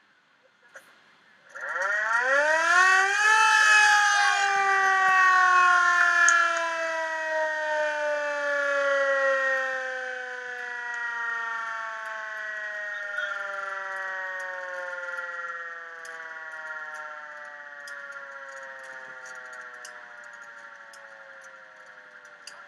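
Motor-driven siren winding up to a wail over about two seconds, then slowly falling in pitch and fading as it winds down.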